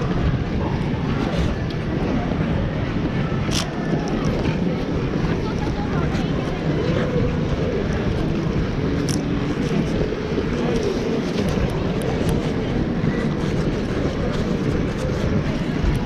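Steady low rumble of air and motion on a neck-mounted action camera while ice skating, over the echoing murmur of many voices in a busy indoor ice rink, with a few brief sharp scrapes or clicks.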